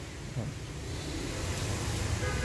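Low steady rumble of background noise, slowly getting a little louder, with one faint short sound about half a second in.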